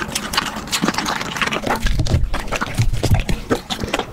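Alaskan Malamute eating raw food close to the microphone: a fast run of wet chewing and smacking clicks, with heavier low thuds about halfway through.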